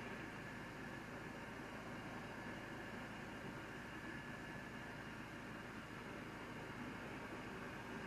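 Steady low hiss of the recording's background noise with a faint low hum underneath, and no distinct sound event.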